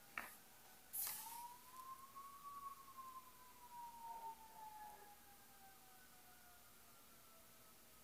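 Near silence with a faint siren: one long wailing tone that rises over about two seconds and then slowly falls away, fading out about six seconds in. Two sharp clicks come in the first second.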